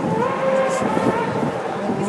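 Formula One car's Mercedes V8 engine holding a steady high note, with a brief rise in pitch just after the start.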